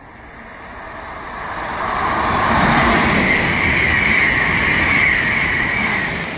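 Amtrak Acela Express high-speed trainset approaching and passing at speed: the rush of wheels on rail and moving air builds over the first two to three seconds, then holds loud as the power car goes by, with a steady high whine running through it.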